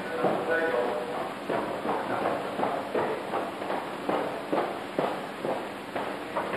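Footsteps on a hard floor, roughly two a second, as someone walks across the lecture room, with faint speech in the background.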